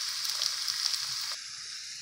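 Green bell peppers and chopped white onion sizzling in hot olive oil in a frying pan: a steady hiss dotted with small pops and crackles, which gets a little quieter about a second and a half in.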